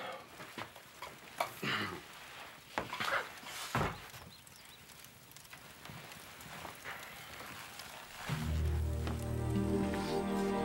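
Shuffling, clothing rustle and a few scattered bumps of people moving as a weak man is helped to his feet and across the room, with short breaths among them. Slow, sad music with low held notes comes in near the end.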